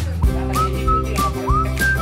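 Background music: a whistled melody with short pitch slides over a steady beat, bass and sustained chords.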